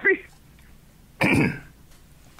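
A man clearing his throat once, a short loud rasp about a second in.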